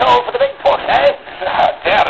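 Speech only: voices talking back and forth.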